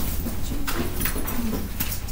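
Classroom background: a steady low hum with a few sharp clicks and knocks, about three in two seconds, and a faint murmur in the middle.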